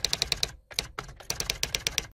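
Typing sound effect: quick, even clicking of keys, about ten strokes a second, with a short break about half a second in.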